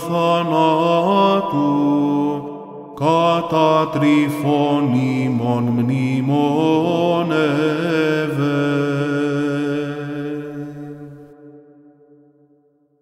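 Byzantine chant: a melismatic sung phrase over a held drone (ison). It breaks off briefly about two and a half seconds in, resumes, and the closing note and drone fade out near the end.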